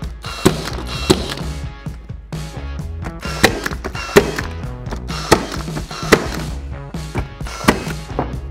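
Battery-powered nail gun firing nails into reclaimed barn wood boards: about seven sharp shots at uneven spacing, heard over background music.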